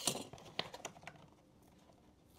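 Small clicks and taps of a phone being lifted out of the tray of its cardboard box. There are a few sharp clicks in the first second, then only faint handling.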